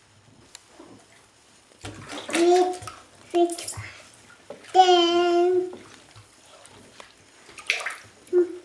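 A toddler makes wordless vocal sounds in a bath: two short calls, then one longer call held at a steady pitch about halfway through. Water sloshes quietly around them.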